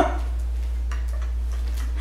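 A few faint scissor clicks at a tough plastic foot-peel bootie that won't cut, about a second in, over a steady low hum.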